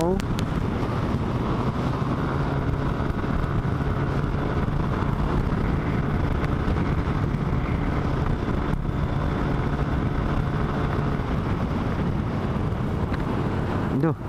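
Yamaha Aerox scooter's single-cylinder engine running steadily at cruising speed while accelerating gently, with wind and road noise rushing over the microphone.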